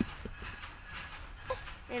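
Faint scattered clicks and taps over a low room hum, with a sharp tick at the start and another about a second and a half in, then a short voice near the end.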